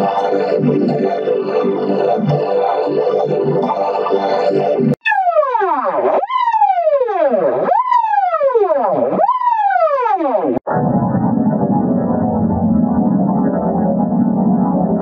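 A short synthesizer logo jingle replayed with a different audio effect each time, cutting abruptly between versions. First comes a dense, steady-pitched version. About five seconds in, it becomes four falling pitch swoops of about a second and a half each. Near eleven seconds, it turns into a muffled, distorted version with the high end cut off.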